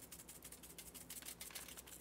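Faint, quick rattling ticks of sprinkles being shaken in a small plastic shaker bottle and scattering onto wax paper.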